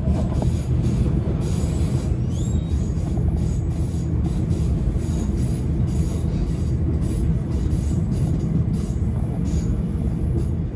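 Stockholm metro train running at speed, heard from inside the carriage: a steady rumble of wheels on rail with irregular clacks, and a brief rising whine about two and a half seconds in.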